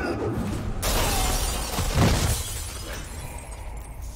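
Film fight-scene sound effects: a loud crash of shattering, breaking debris about a second in, with a heavy hit a second later, then fading away under a low music score.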